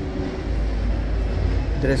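A low, steady rumble that grows a little about half a second in.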